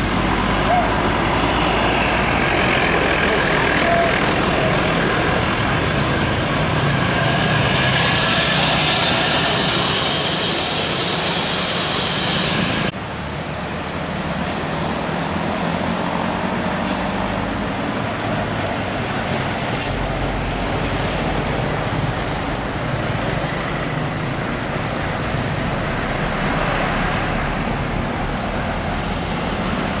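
Diesel coach engines labouring through a hill bend, with road traffic, growing louder until a sudden cut about 13 seconds in. After it, another coach and a light truck run by, with a few short high hisses.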